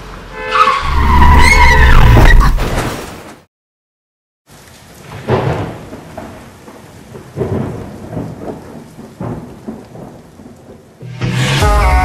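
A loud burst for about three seconds, heavy low rumble with a squealing tone that slides up and then down, cuts off into a second of silence. Then rain with several rumbles of thunder, and music comes in near the end.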